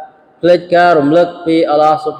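A man chanting Quranic Arabic verses in the melodic recitation style, the voice holding long, even notes. It begins after a short pause about half a second in.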